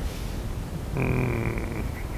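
A man's drawn-out, steady hum of hesitation at the same pitch as his speaking voice, like a held 'ehh', about a second long and starting halfway through.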